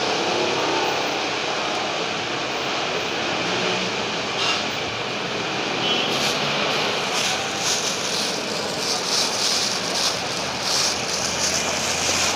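Steady street traffic: motorcycles and motorcycle tricycles running past on the road, with short high hisses now and then in the second half.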